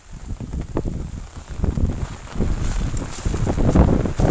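Strong wind buffeting the microphone in irregular gusts, growing louder toward the end.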